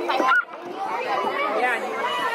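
Several children chattering with overlapping voices, with a brief break about half a second in.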